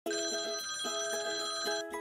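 Telephone ringing sound effect: a bright, many-toned ring pulsing about four times a second, cutting off just before the two-second mark.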